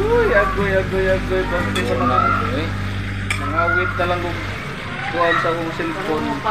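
Metal spatula stirring and tossing shredded bamboo shoots and meat in an aluminium wok, with the food frying. Voices are heard in the background, and a steady low hum stops about four and a half seconds in.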